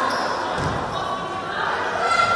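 Live volleyball rally in an echoing sports hall: players' voices calling and a crowd chattering, with a dull thud about half a second in.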